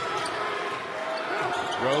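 A basketball being dribbled on a gym floor during live play, over a steady murmur of the crowd.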